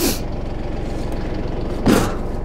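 Kubota L3301 tractor's three-cylinder diesel engine idling steadily, with two brief swishes, one at the start and one near the end.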